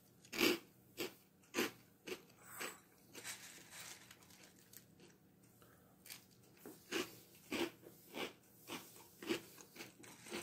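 Dry Boo Berry cereal being chewed: crisp crunches about twice a second, softer for a few seconds in the middle, then louder again.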